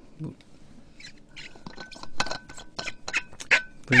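A string of small irregular clicks and squeaks as a person handles a drinking cup after taking a drink of water.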